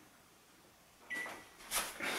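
A single short electronic beep as a kitchen timer is set, about a second in, followed by a brief knock.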